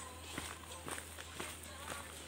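Faint footsteps on a dirt forest trail, about two steps a second, from people walking.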